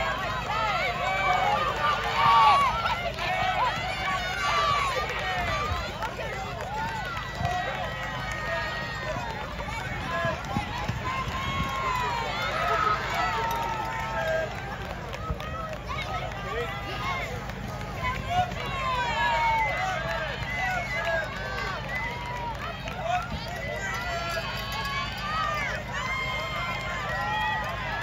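A crowd of spectators shouting and cheering runners on, many voices overlapping with no let-up.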